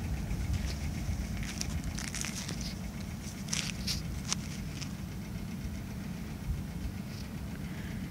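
A steady low rumble, with a few faint crunches of footsteps on dry dirt and brush about two to four and a half seconds in.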